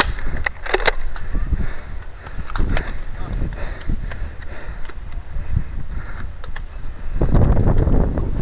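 Sharp clicks and clacks from a Nerf N-Strike Alpha Trooper pump-action blaster being primed and fired, the loudest a pair just under a second in, a few more spaced out after. Wind rumbles on the microphone underneath and grows louder near the end.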